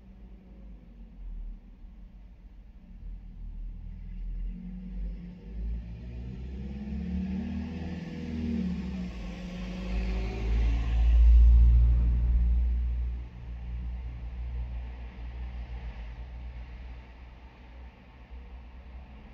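A motor vehicle passing by, heard from inside a parked car. Its engine and tyre noise grow from about four seconds in, peak with a heavy low rumble around eleven seconds, then fade off quickly.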